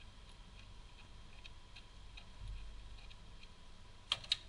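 Faint light clicks at irregular spacing from hand work on small parts around the ignition coils on top of an engine, over a low background rumble.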